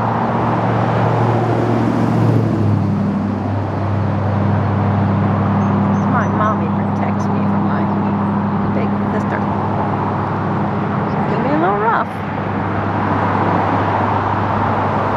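Steady road traffic noise with a constant low engine hum underneath. Two short rising sounds cut through, one about six seconds in and one near the end.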